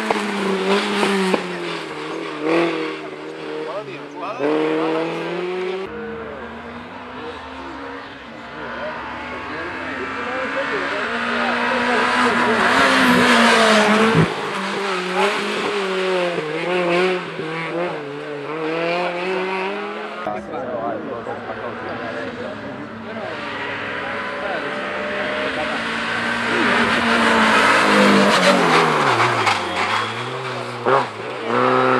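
Engines of rally-prepared hatchbacks, a Renault Clio among them, revving up and down in quick rises and falls as each car threads a cone slalom. The sound grows loudest around the middle and again near the end as cars pass close.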